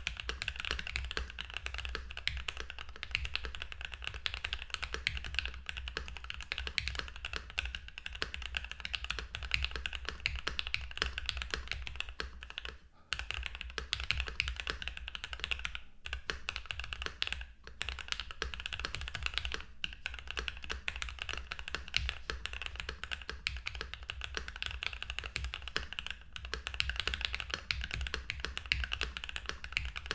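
Continuous fast typing on a Keychron Q5 custom mechanical keyboard built with lubed Gateron Red Ink V2 linear switches, PBT keycaps, a steel plate, case and plate foam and a tape mod: a dense run of keystrokes with a few brief pauses around the middle.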